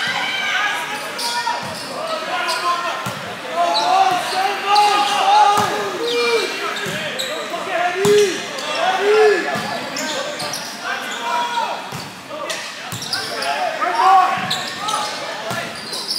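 Volleyball rally in a large, reverberant gym: the ball is struck again and again with sharp smacks, while players and spectators shout and call out in short bursts.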